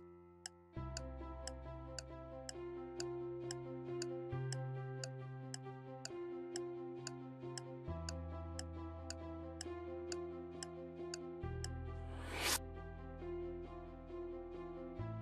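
Quiz countdown-timer music: sustained synth chords over a low bass that change every few seconds, with a clock-like tick about twice a second. About twelve seconds in, a rising whoosh sweeps up and is the loudest sound.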